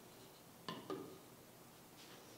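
Two knocks of plastic toy bowling pins being set down on a wooden tabletop, close together a little under a second in.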